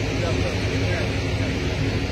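Steady low engine hum, with people talking over it.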